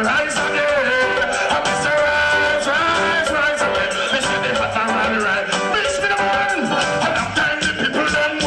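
Dancehall deejay chanting into a microphone over a reggae backing rhythm, amplified through the club's sound system.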